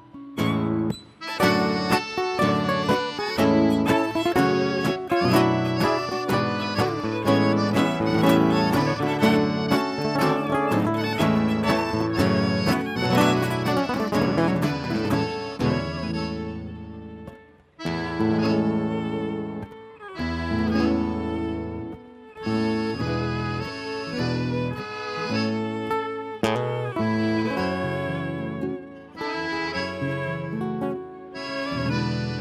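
Live gaúcho folk band playing instrumental dance music, led by accordion over strummed acoustic guitar with a steady beat. The music breaks off briefly between phrases about two-thirds of the way through, then picks up again.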